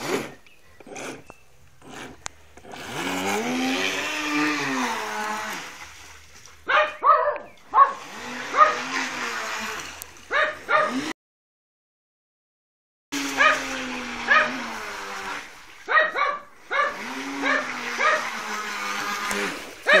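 A dog whining and yelping: long drawn-out cries that slide up and down in pitch, alternating with runs of short, quick yips. The sound cuts out completely for about two seconds midway.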